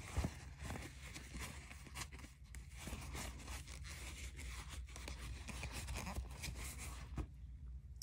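Paper towel rustling and rubbing as excess ink is wiped off a freshly filled fountain pen, with a few small clicks of handling.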